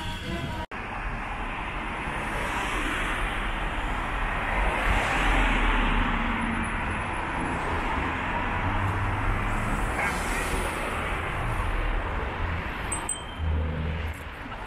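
City road traffic: cars driving past, loudest about five seconds in as one goes by.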